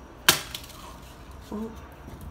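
A smartphone thrown hard onto a concrete patio: one sharp crack of impact about a quarter second in, with a faint second tap just after as it bounces.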